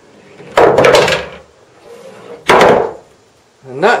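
An American pool ball dropping through the middle pocket of a UK slate-bed pool table and running down the ball-return runway. Two heavy knocks sound about a second and a half apart as the ball falls and strikes the wooden runway. The oversized ball clears this pocket and reaches the bottom of the table without jamming.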